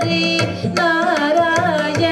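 A woman singing Indian classical-style melody into a microphone, her notes sliding and bending in ornamented turns, over rhythmic hand-drum strokes.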